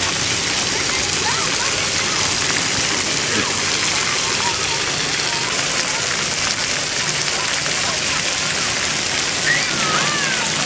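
Splash pad water jets spraying and splattering onto the wet deck, a steady hiss of falling water, with children's voices faintly over it.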